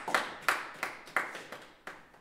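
Hand claps in a steady rhythm, about three a second, growing quieter and stopping near the end.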